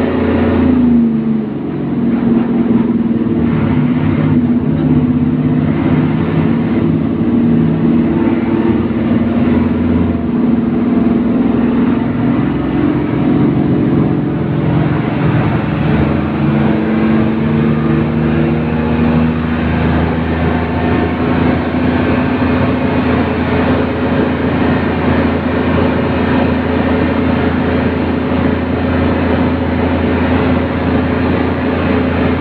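Isuzu MT111QB city bus's diesel engine heard from inside the cabin, under way. The engine note dips briefly about a second in, then runs steadily, and road and wind noise grows louder in the second half.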